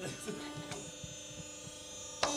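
Hydraulic hose crimping press (G20) running with a steady electric hum as it crimps a fitting onto a hydraulic hose.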